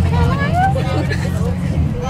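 Steady low rumble of a bus engine and road noise heard inside the bus, under voices.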